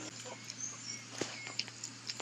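Quiet eating sounds: small clicks and smacks of chewing and of fingers working rice on a banana leaf, with a few short high chirps and a steady low hum underneath.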